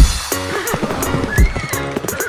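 Background music with a horse whinny sound effect laid over it in the second half.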